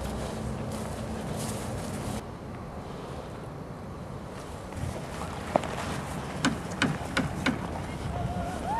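Wind rushing over the microphone, dropping off about two seconds in. In the second half, a handful of sharp clicks.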